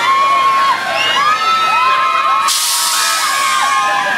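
Many riders on a large swinging, flipping gondola amusement ride screaming together, with long held and sliding screams. About two and a half seconds in, a loud hiss cuts in for over a second.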